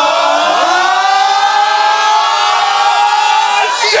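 A man shouting one long held 'oh' into a hand microphone, with other voices holding it alongside him, cut off near the end by a shouted 'shit'.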